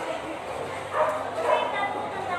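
A dog barking twice in quick succession, short yapping barks, over background voices.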